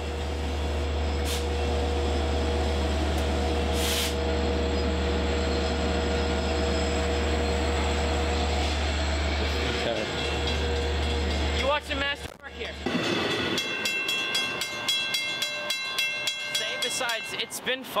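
A train at a railway station: a steady low rumble with a constant hum over it, which drops away about twelve seconds in.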